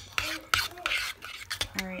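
A metal utensil stirring a thick, creamy mixture in a slow cooker's crock, with a run of short clicks and scrapes against the pot.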